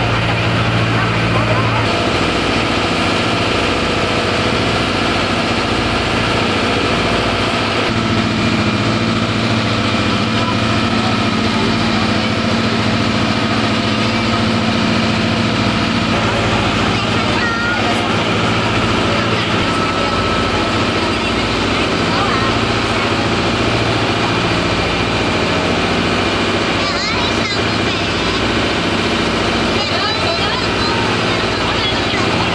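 Passenger ferry's engine running steadily underway, a loud constant drone, with water rushing past the hull.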